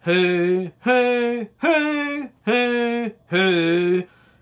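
A man's voice singing five separate 'hoo' notes, each started on the breath without the tongue, the 'honking' articulation for trumpet flexibility practice. The notes step up in pitch and back down, with short gaps between them.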